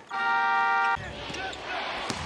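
A commentator's long, flat 'eh' fills the first second. Then a basketball game in an indoor arena takes over, with a ball bouncing on the hardwood court over a background of the hall.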